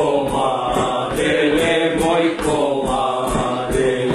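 Voices singing a slow, drawn-out Bulgarian koleda (Christmas carol) together in a chant-like style, with a steady beat underneath.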